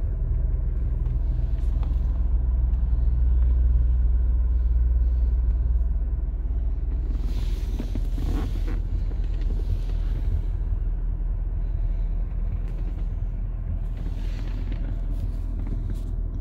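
2005 Chevrolet Corvette C6's 6.0-litre LS2 V8 idling steadily, a low rumble heard from inside the cabin, swelling a little for a few seconds near the start.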